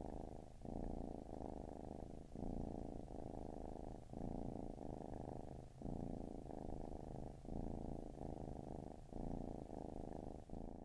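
Cat purring close to the microphone, a muffled, low purr that swells and eases with each breath about every second and a half.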